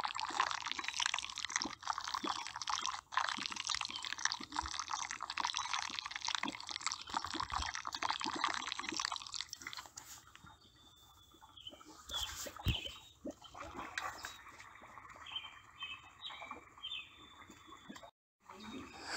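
Wet mud squishing and clicking in dense crackly bursts for about nine seconds, then thinning to sparse, quieter squelches.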